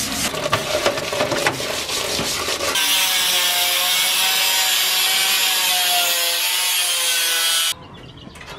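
Rough rubbing and scrubbing strokes for the first few seconds. Then a handheld angle grinder's abrasive disc cuts through the sheet-steel computer case, a steady grinding noise with a held whine that cuts off abruptly near the end.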